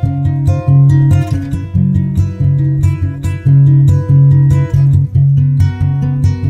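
Background music led by strummed acoustic guitar, with notes and a low bass line at a steady beat.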